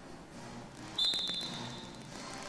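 A drum major's whistle gives one long, shrill, steady blast about a second in, with a few sharp taps near its start.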